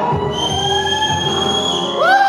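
Live solo music: keyboard playing with a long, steady held high note.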